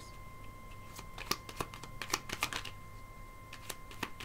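A deck of tarot cards being shuffled by hand: a run of quick, irregular card snaps from about a second in to near three seconds, then a few more near the end.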